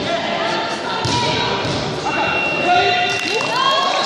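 Several people talking at once in a large, echoing sports hall, with a few thuds near the end.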